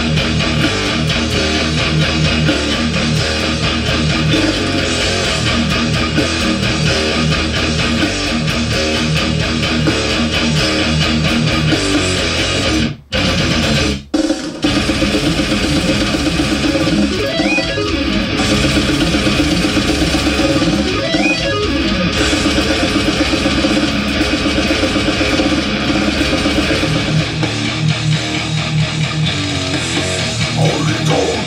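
Death metal music: a dense, fast riff on distorted electric guitar and electric bass. It drops out twice for a moment about halfway through.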